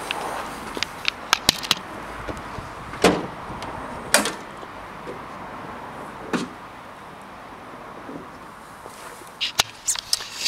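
Scattered clicks and clunks from a 2013 Kia Picanto's bonnet being released and lifted, over a steady outdoor background hiss; the loudest knocks come about three and four seconds in. A few handling knocks follow near the end as the camera is picked up.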